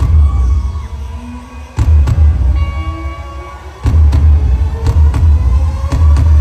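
Live rock band playing through a large concert PA, heard from the crowd. Heavy bass and drum hits surge in about every two seconds and fade between them, then hold steady from about four seconds in.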